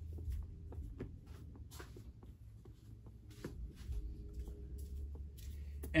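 Faint rustling of slippery satin fabric being handled, with scattered light clicks over a low steady hum.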